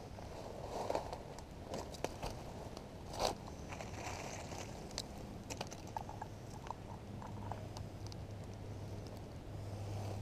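Footsteps crunching through dry fallen leaves and twigs close by, with scattered sharp clicks and scrapes. The loudest crunches come about one second and three seconds in.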